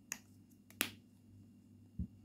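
A metal teaspoon clicking sharply against a cut-glass bowl twice, about two-thirds of a second apart, the second click the louder, over a faint steady hum.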